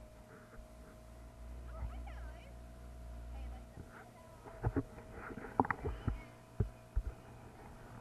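Small outboard motor on an inflatable dinghy running at a steady pace, heard as a faint, muffled hum, with a low rumble for the first four seconds. A few sharp knocks come in the second half.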